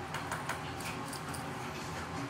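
A few light metallic clicks and ticks over a steady low hum: the mesh basket's metal handle knocking against the rim of a stainless steel tank of hot water.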